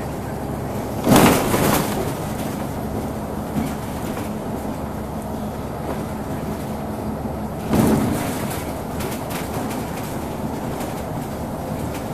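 Interior of a Wright Solar single-decker bus with a ZF automatic gearbox running along: a steady engine and road drone. Two loud knocks from the bus body stand out, about a second in and about eight seconds in, with a smaller one in between.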